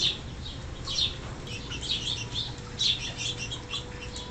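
Small birds chirping at a bird feeder: short, falling chirps, a few louder ones about a second apart with quicker ones crowded between.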